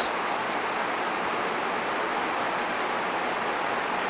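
Steady hiss of background noise in a pause between speech, with no distinct events.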